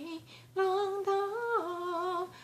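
A woman singing a slow Chinese folk melody unaccompanied, holding long notes that step up and then down in pitch, after a short breath just under half a second in.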